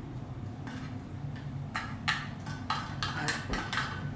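A plastic utensil scraping and tapping inside a metal tuna can as chunk tuna is dug out: a run of short scrapes and clicks, faint at first and quicker and louder from about halfway through.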